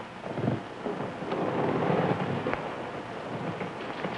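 Rumble and hiss of an old film soundtrack, swelling a little in the middle, with a couple of faint clicks.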